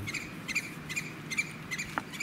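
A steady series of short, high chirps from a small animal, about three a second, with a single sharp click near the end.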